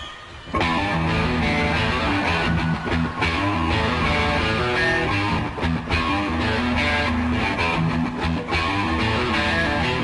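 A live rock band comes in about half a second in: an electric guitar riff over bass guitar and drums, played at full volume without vocals.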